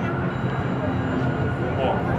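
Indistinct crowd chatter and scattered voices over a steady background din, with no music playing.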